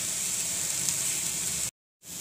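Shredded cabbage and carrot frying in hot oil in a pan, a steady sizzle that cuts off suddenly near the end.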